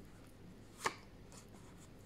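Tarot cards being drawn from a deck by hand: one short, sharp tap a little under a second in, otherwise faint room tone.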